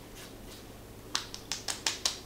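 Fingertips patting a watery skincare essence into the skin of the face: a quick run of about six short, sharp slaps starting about a second in.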